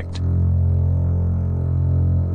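Background music: a low, sustained bass note holding steady.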